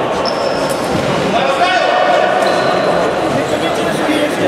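Futsal ball being kicked and bouncing on a hard sports-hall floor, with players shouting, all echoing in a large hall.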